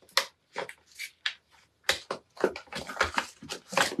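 Clear plastic stamp sleeve crinkling and crackling as it is handled and the clear stamps are slid out, a quick irregular run of small crackly clicks.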